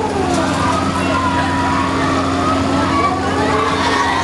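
Fairground thrill ride in motion, its machinery giving a steady low hum, with a mix of unclear voices and drawn-out shouts from riders and onlookers over it.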